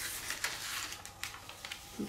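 Paper backing being peeled off transfer tape and the sheet being handled: a faint crinkling rustle with a few small crackles.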